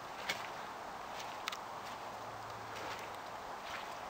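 Footsteps walking slowly over rough ground strewn with wood chips and debris: a few faint crunches roughly a second apart over a low steady hiss.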